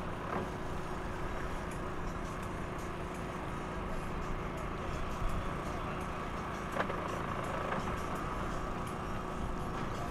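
A steady, low engine rumble at idle, with no clear rise or fall.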